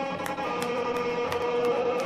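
Rock band playing live: electric guitar holding long, ringing notes over light, regular drum hits.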